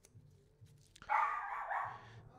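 A dog barking, starting about a second in and lasting under a second.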